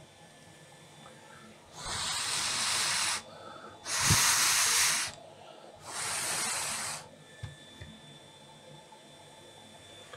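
Three hissing blasts of air, each a second or so long, blown over a laptop motherboard to cool a freshly soldered replacement capacitor that is still hot. A soft thump falls during the second blast, and a few light knocks come near the end.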